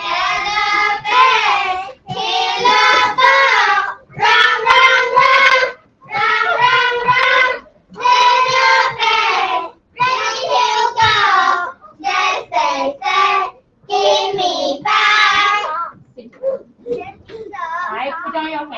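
A group of young children chanting an English rhyme loudly in unison, phrase by phrase with short breaks between lines, recited in order.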